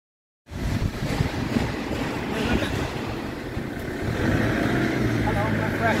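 Low, steady rumble of a motor vehicle engine running, with a man's voice starting near the end.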